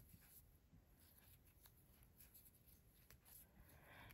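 Near silence: faint scratchy rubbing of size 10 cotton thread drawn over a fine steel crochet hook as stitches are worked by hand.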